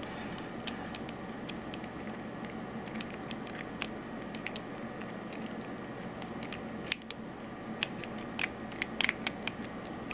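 Small, irregular metallic clicks and scratches of a homemade underwire pick working the pin stack of a Master Lock Magnum padlock held under tension by a wire lever, with a few sharper clicks in the last few seconds.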